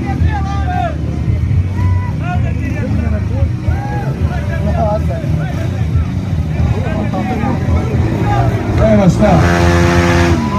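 Motorcycle engines running at a low idle while the riders hold their bikes almost in place, a steady low rumble under crowd voices. Near the end a louder sound with a steady pitch rises over it.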